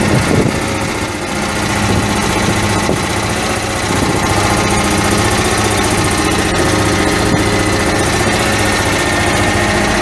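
Duramax 6.6-litre V8 turbo diesel engine idling steadily.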